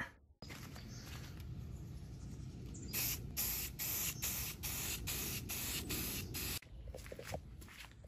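Aerosol spray can sprayed in a rapid series of short hissing bursts, about nine in under four seconds, starting about three seconds in. It is laying primer over a sanded plastic-filler patch on a fender flare.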